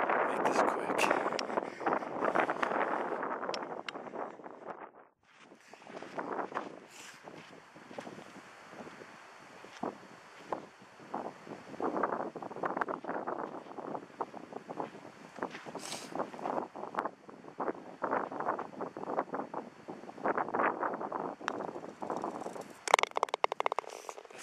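Wind buffeting an outdoor microphone in uneven gusts, with scattered short knocks and rustles.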